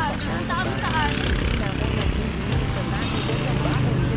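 Several people talking, with a steady low engine rumble underneath that grows stronger about halfway through.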